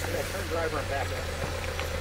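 A vehicle engine idling steadily, a constant low hum with a steady higher drone over it.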